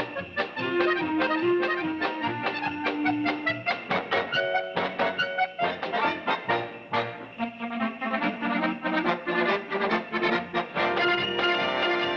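A dance orchestra playing a lively polka over a quick, steady beat.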